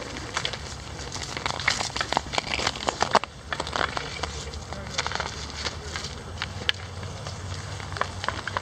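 Dry grass and reeds crackling and rustling as a dog rolls on its back in them, with many irregular snaps, thickest in the first few seconds.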